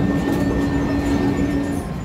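Busy video-arcade din: game machines' electronic sounds over a steady general rumble. A steady low electronic tone holds through most of it and stops shortly before the end.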